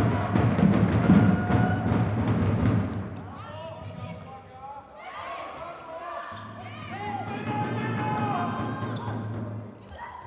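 Sports-hall din: a rapid run of knocks or claps over a steady low hum for about three seconds, then voices calling and shouting, with the hum coming back partway through.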